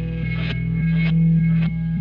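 Hard rock song in an instrumental passage: an effected electric guitar picks notes about every half second over a sustained low tone.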